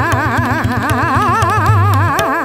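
Hindustani classical singing in Raga Megh: a woman's voice runs through fast ornamented phrases, its pitch wavering quickly up and down, over a brisk stream of tabla strokes.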